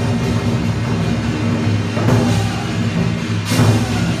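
Lion dance percussion: a large drum beaten steadily with hand cymbals clashing over it, with heavier accents about two seconds in and again near the end.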